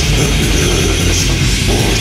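Death/doom metal song playing loudly and without a break: dense, heavily distorted guitars fill the sound.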